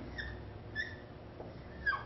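Dry-erase marker squeaking on a whiteboard while writing, a few short high squeaks.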